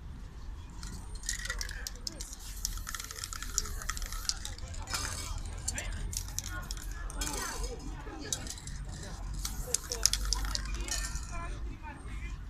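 Aerosol spray-paint cans hissing in several short bursts, a second or two each, with sharp clicks and the rattle and clink of handled cans.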